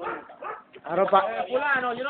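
A person's voice making wordless, sing-song syllables that glide up and down in pitch, louder from about a second in.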